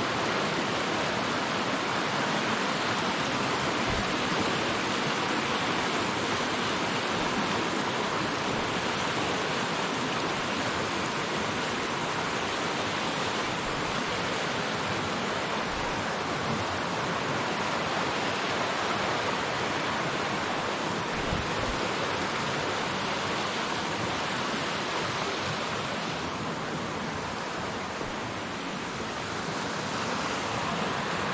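Rushing stream running fast over rocks: a steady, even rush of water.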